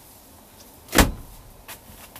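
A single loud knock about a second in, with a short ringing tail, followed by a lighter click near the end.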